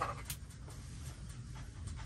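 Eating at a table: soft clicks and taps of hands and a spoon at a wooden plate, with chewing, over a low steady rumble.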